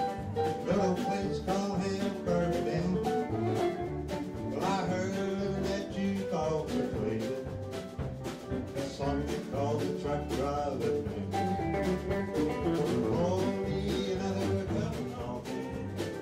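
Live country band playing: a male voice singing over strummed acoustic guitar, electric guitar, pedal steel guitar and bass with a steady beat.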